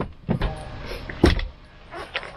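Ski gear being handled and loaded into the back of a car at its open tailgate: a rustle and two knocks, the louder about a second in.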